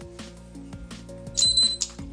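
A single short, high electronic beep from the Bold smart cylinder lock, sounding about a second and a half in after its knob has been turned through the backup PIN sequence. It signals that the code was accepted and the lock is open.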